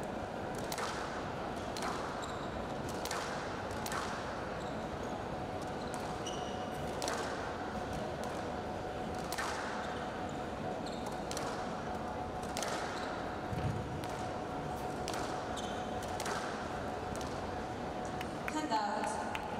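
Squash rally: the ball cracking off rackets and the court walls about once a second, with short squeaks of court shoes on the floor.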